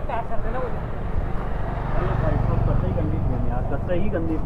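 Several men talking in the background over a steady low rumble.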